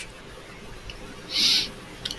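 A brief pause in a conversation picked up by a headset microphone. The background is low and steady, with one short hiss-like breath about one and a half seconds in, just before the next speaker starts.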